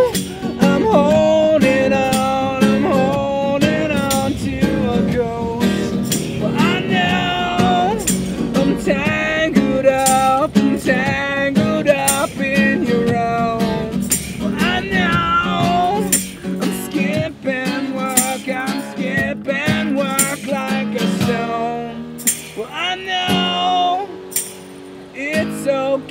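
Live acoustic guitar strummed with a man singing a held, wavering melody over it, and a tambourine shaken and struck in time.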